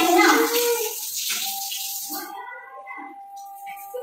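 Water spraying from a hand-held shower head in a small tiled bathroom, cutting off sharply about two seconds in, with voices and background music over it.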